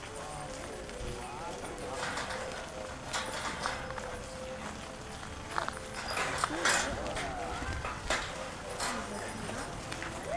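Indistinct chatter of children and adults, with several sharp clicks and knocks scattered through it and a faint steady tone underneath.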